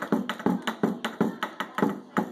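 Taiko drum struck rapidly with a pair of wooden sticks, about five or six beats a second, in a celebration drumroll for a lucky pearl, with hand claps joining in.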